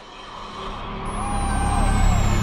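A road vehicle approaching, its deep rumble swelling steadily louder, with a thin high tone sliding slowly downward in the second half.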